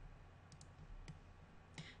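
Near silence with a faint low hum and a few soft computer-mouse clicks, a couple about half a second in and one near the end, as the push-pull tool grabs and releases a face.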